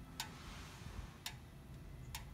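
Two faint, sharp clicks about a second apart over a low steady hum.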